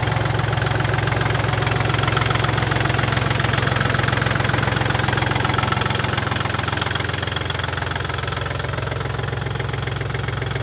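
Kubota L2550 DT compact tractor's diesel engine idling steadily.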